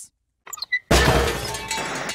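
A few light clinks, then a sudden loud crash of shattering glass about a second in that rings and dies away over the following second.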